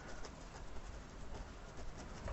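Fan brush loaded with thick oil paint dabbed and pushed up against a canvas: a few faint scratchy strokes over a low steady hum.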